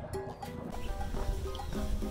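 Soft background music with held notes, over a low rumble.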